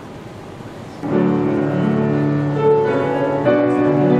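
Upright piano: a solo starts about a second in, with held chords and a melody line over them.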